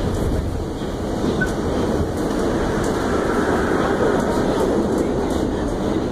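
Ride noise inside a moving R68 subway car: a steady rumble of wheels on rail with faint clicks.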